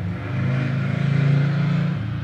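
A vehicle engine running, heard as a low steady drone.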